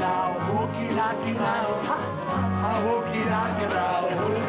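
Upbeat live band music from acoustic archtop guitars, accordion and upright bass, with a bouncing two-note bass line under a wavering melody.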